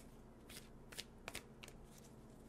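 Oracle cards being shuffled by hand: a faint, irregular run of about six quick flicks and slaps of the cards, starting about half a second in.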